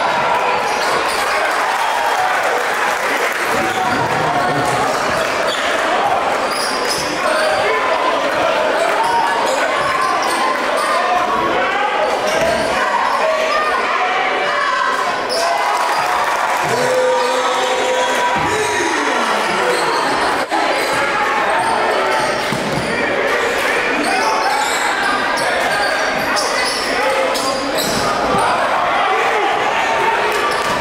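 Live gym sound of a basketball game: a basketball bouncing on the hardwood court amid indistinct crowd voices, echoing in a large hall.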